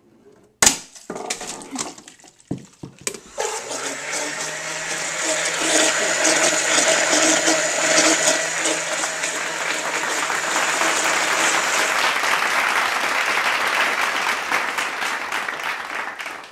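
A sharp bang about half a second in and a few knocks, as the Rube Goldberg chain trips. From about three and a half seconds, an electric blender switches on and runs steadily, churning a jar of water to mix Kool-Aid.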